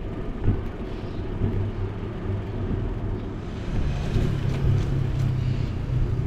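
Steady low rumble of a bicycle ride picked up by a handlebar-style action camera: wind buffeting the microphone and tyres rolling on a concrete path, with a brighter hiss joining about three and a half seconds in.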